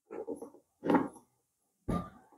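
Two short sounds in the first second, the second the louder, then a thump near the end as a cardboard box is set down on a table.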